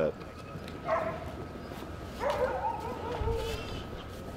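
Sled dogs calling: a short yelp about a second in, then a longer drawn-out whine that sags slightly in pitch.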